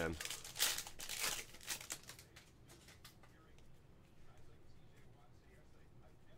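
Foil wrapper of a Panini Prizm football card pack being torn open, crinkling sharply for about two seconds, then faint handling as the cards come out.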